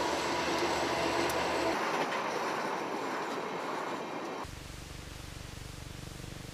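Freight train hauled by diesel locomotives passing, a steady rush of wheel and rail noise that fades slightly and cuts off abruptly about four and a half seconds in, leaving only a faint low hum.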